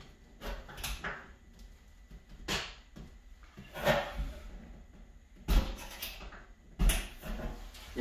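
Scattered knocks and scrapes of a hand and a small flathead screwdriver against a stainless steel sink backsplash, about six separate ones, as a wall-mount faucet's lock nuts are tightened from behind.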